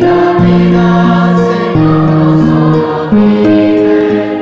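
A choir singing a slow chant in long held chords, the notes moving to a new chord about once a second.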